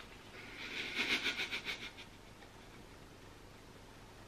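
A woman's high-pitched, quavering squeal, pulsing about eight times a second for about a second and a half.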